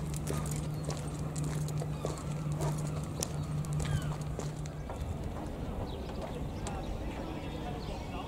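A person and a dog walking on a concrete marina pontoon: footsteps and many light clicks and taps. A steady low hum runs under them and stops about five seconds in.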